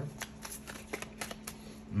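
A deck of tarot cards being handled and shuffled in the hands, the cards sliding against each other with light, irregular clicks.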